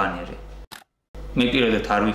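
A man speaking. Near the middle his speech breaks off into a short stretch of dead silence, then he speaks again.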